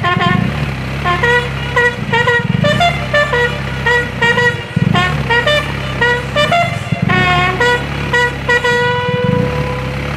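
Brass band playing a ceremonial tune: a melody of short notes over a steady low accompaniment, ending on one long held note over the last few seconds.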